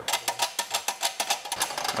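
The gear selector inside a Great Wall manual gearbox is pushed about by hand through the shifter opening, and its metal parts give a quick, irregular run of clicks and clacks. It flops around loosely because the reverse lockout and the detent are not fitted yet.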